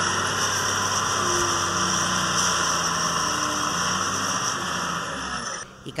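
Caterpillar wheel loader's diesel engine running steadily, a continuous mechanical drone that cuts off near the end.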